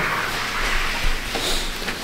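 Cloth rubbing against the camera's microphone: a steady rustling hiss as the camera is carried held against a shirt.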